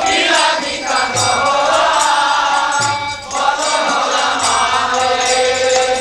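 A Bengali devotional bhajan being chanted to hand percussion, with a low drum stroke every second or two.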